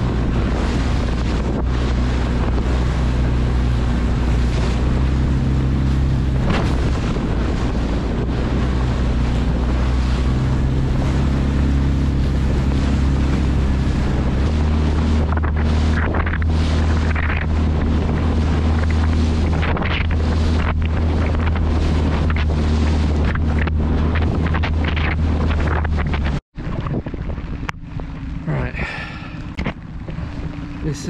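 Small inflatable boat's outboard motor running steadily under way, its note shifting about halfway through as the throttle changes, with heavy wind buffeting on the microphone and rushing water over it. Near the end the sound cuts out for a moment and returns quieter.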